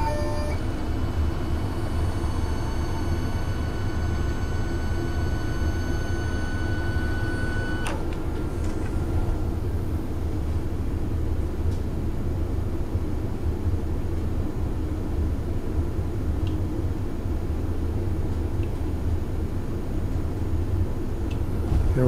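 Steady low hum of a CNC milling machine, with a high whine of several tones from its table drive over the first eight seconds that stops abruptly about eight seconds in, as the table is traversed to sweep a test indicator along the part being aligned.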